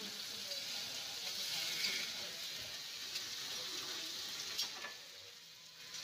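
Mutton pieces sizzling as they fry in a large steel kadai, stirred with a metal spatula that gives a few light clicks against the pan. The sizzle softens about five seconds in.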